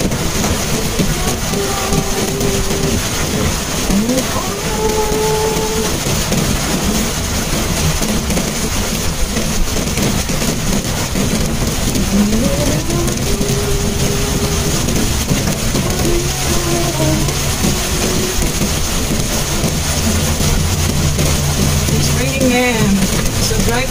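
Rain falling on a Mitsubishi Mirage's roof and windshield, heard inside the cabin, over the steady noise of the car driving on a wet road. The engine's low hum grows louder over the last few seconds.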